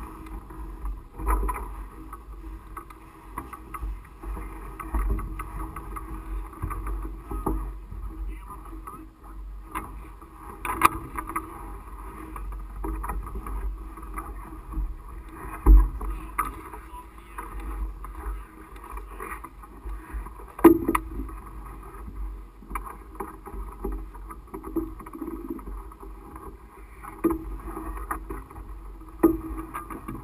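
Wind buffeting a GoPro mounted on top of a powered parachute's mast, heard as an uneven, muffled rumble, with occasional sharp knocks, the loudest about 16 and 21 seconds in.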